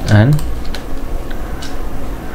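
A brief hum of a man's voice at the very start, then a few separate clicks at the computer, keys or mouse buttons, while text is being selected.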